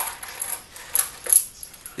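Steel roller rocker arms (cam followers) clinking together in gloved hands: a few light metallic clicks.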